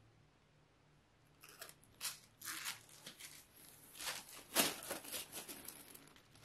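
Packaging rustling and crinkling as it is handled, in irregular crackling bursts that begin about a second and a half in, the loudest about three-quarters of the way through.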